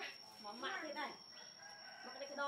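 A rooster crowing once, starting about half a second in, its call sweeping down in pitch.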